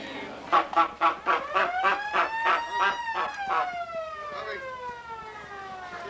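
Rhythmic clapping, about four claps a second, that stops a little over halfway through. Over it runs one long whistle-like tone that rises slowly for about three seconds and then slides back down.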